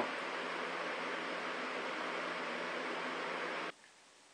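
Steady hiss that cuts off suddenly near the end.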